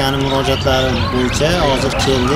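A man speaking continuously in Uzbek.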